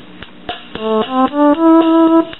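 Suzuki Keyman PK49 preset keyboard playing its flute voice, a smooth, low flute tone. Beginning under a second in, a few notes step upward, and the last one is held. Faint regular ticks run underneath.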